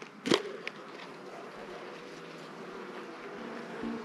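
Honeybees buzzing around an opened mini styrofoam mating nuc, the buzz growing stronger near the end over a steady outdoor hiss. A brief sharp sound comes about a third of a second in.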